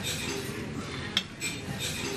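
Tableware clinking as a spoon and a glass dessert cup are handled over a china cake stand, with one sharp clink about a second in.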